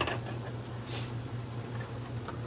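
Batter fritters frying in a pan of hot oil: a steady sizzle with small crackles. A low steady hum runs underneath.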